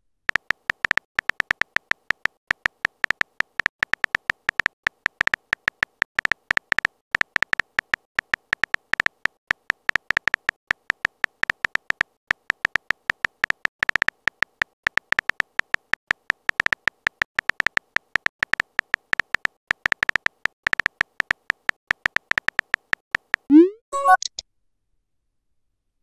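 Simulated phone keyboard of a texting-story app: a fast, uneven run of short high beeping taps, several a second, one per typed letter. Near the end a short rising whoosh sounds as the message is sent.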